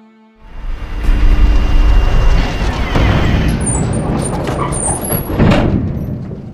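A loud rumbling, rushing sound effect with a heavy deep bass, swelling up about half a second in and easing off near the end, over music.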